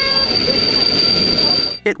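Red Rhaetian Railway train's wheels squealing as it takes the tight curve of a spiral viaduct: one steady high-pitched squeal over the low rumble of the train, cutting off abruptly near the end.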